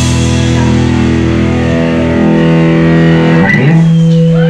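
Live rock band's electric guitar and bass holding one loud, ringing chord with no drumming, then a sliding change of pitch a little after three seconds in into a new held note, typical of a song's closing chord being rung out.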